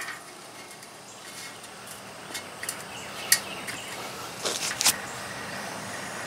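Bicycle wheel spinning freely by hand, a faint steady whir with a few light ticks scattered through it, the sharpest about three seconds in and a quick cluster near five seconds. The wheel has been spun to check whether the tire still rubs the freshly bent fender.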